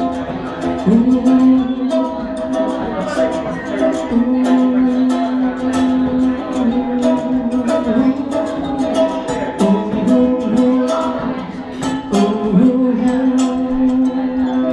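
A man singing long, held notes without clear words into a microphone, accompanied by a strummed ukulele, played live through a small PA.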